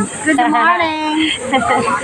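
Women's voices talking and laughing, with a steady high hiss underneath.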